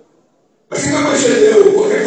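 Silence for under a second, then loud voice sound starts abruptly and runs on, with a held pitch through it.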